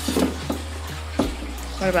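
A wooden branch knocking and scraping against the sides of a plastic tub as it is turned and repositioned: a few short, sharp knocks over the first second or so.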